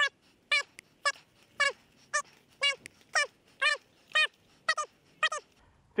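A small dog barking repeatedly in sharp, high-pitched yaps, about two a second, eleven in all.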